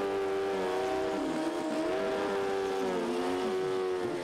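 Drag-racing motorcycle's engine held at high, steady revs during a burnout, spinning the rear tyre. The note dips briefly twice.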